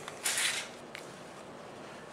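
Handling noise from a Remington 870 pump shotgun being moved and laid down on a cloth-covered table: a brief rustling slide about a quarter second in, then one light click about a second in.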